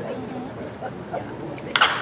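Near the end, one sharp, loud pop of a pitched baseball smacking into the catcher's leather mitt, over a low murmur of spectators' voices.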